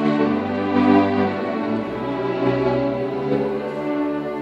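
A string orchestra of violins, cellos and double bass playing live, bowing long held chords that shift in harmony through the passage.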